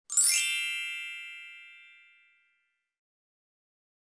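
A single bright, high chime that sounds just after the start and rings away over about two seconds.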